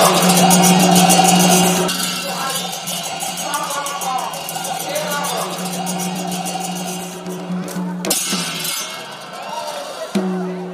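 Traditional Assamese bhaona music: a voice singing or chanting over fast-beaten cymbals and a steady held tone. The cymbal beating breaks off about eight seconds in.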